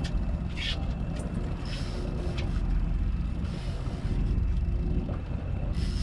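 Boat engine running steadily at trolling speed, a constant low drone with a faint steady hum above it, and a few brief hisses over it.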